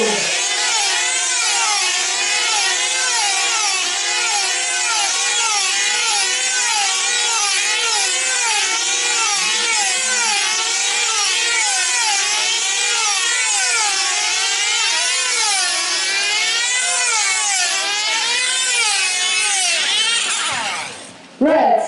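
Several F2C team-race control-line models' 2.5 cc diesel engines running flat out, a high, buzzing whine whose pitch rises and falls over and over as each model circles.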